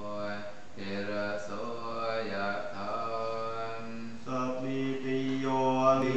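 Buddhist monks chanting a Pali blessing together in a low, steady monotone, in short held phrases. About four seconds in, the chant steps up in pitch and grows louder.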